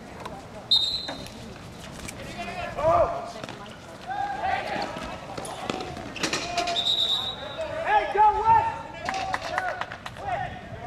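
Roller hockey in play: players and spectators calling out, with sharp knocks of sticks and ball on the rink and boards. Two short, high whistle-like tones come about a second in and again around seven seconds.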